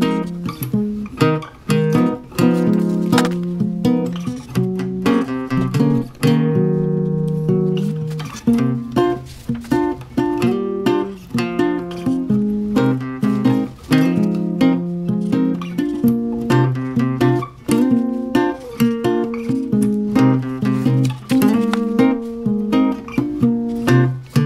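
Background acoustic guitar music, picked notes and strums in a steady rhythm.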